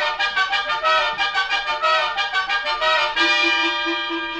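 Brass music bridge of a radio drama: trumpets play a quick run of short, rapidly repeated notes, then hold one long chord for about the last second.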